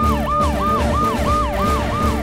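Siren sound effect in a fast yelp, the pitch sweeping up and down about three times a second, over a low pulsing beat.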